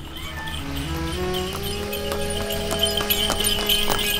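Horse's hooves clip-clopping on the road in an even rhythm as a horse-drawn carriage passes, under background music whose held notes climb step by step. A low traffic rumble runs beneath, and the hoofbeats grow louder towards the end.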